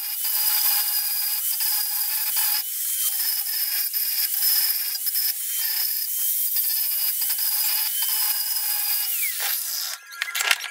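Electric angle grinder grinding the end of a three-quarter-inch black steel pipe to a point: a steady high whine with grinding noise, easing briefly several times as the disc comes off and back onto the metal. It stops near the end.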